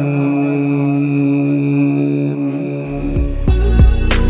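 A man's voice holding one long, steady note at the close of a Quran recitation into a microphone. About three seconds in, instrumental outro music with sharp, repeated beats comes in.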